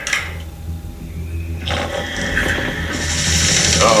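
Animated trailer soundtrack: a steady low rumble, with a swell of noise and music building from about halfway and growing louder toward the end.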